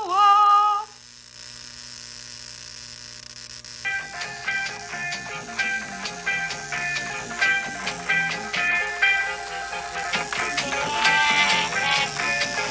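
A homemade Tesla coil's spark gap buzzing steadily for about three seconds, then background music with plucked notes takes over for the rest.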